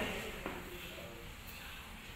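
Quiet hall room tone, with one faint short click about half a second in.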